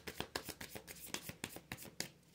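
Light Seers Tarot deck being shuffled by hand: a soft, rapid run of card flicks, about eight to ten a second, that stops at the end.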